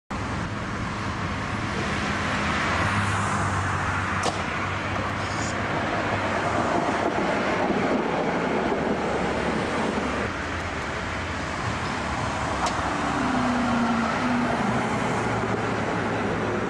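Articulated electric tram running past close by on its tracks: a steady rumble of wheels on rail with a low motor hum. There are two sharp clicks, about four and thirteen seconds in, and a short, slightly falling tone shortly after the second.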